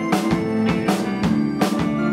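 Indie pop band playing live: a drum kit keeps a steady beat, about three hits a second, under held keyboard and guitar notes, with no singing.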